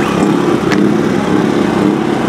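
Powermate PM2000i inverter generator running steadily at full speed, already warmed up. A single sharp click sounds just under a second in.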